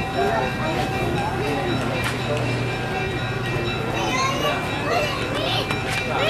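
Voices of several people talking in the background, mixed with music and a steady low hum.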